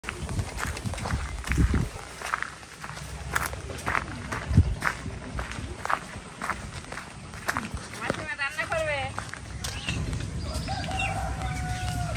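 Sandalled footsteps on a dirt path strewn with dry leaves, about two steps a second. About eight seconds in comes a short warbling call, and near the end a drawn-out call held on one pitch.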